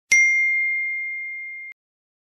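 A single bright, bell-like ding sound effect: one strike that rings on as a single high tone, fading steadily for about a second and a half before cutting off abruptly.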